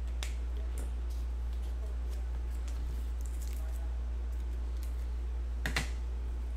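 Steady low electrical hum with scattered light clicks and taps of small objects being handled at a desk, and a sharper pair of clicks near the end.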